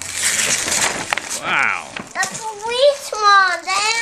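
Cardboard toy box and paper rustling as its flaps are pulled open, then loud, wordless voices exclaiming in rising and falling pitch through the second half.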